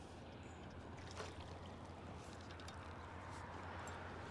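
Faint water splashing and trickling at a small aluminum boat, over a steady low hum, with a few light ticks and a small click about a second in.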